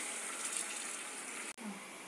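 Diced potatoes sizzling in hot oil in a kadhai just after being added, a steady hiss that cuts off sharply about one and a half seconds in.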